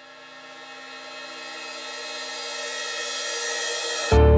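A cinematic riser: a drone of many sustained steady tones swelling steadily louder and brighter, building tension like a crescendo.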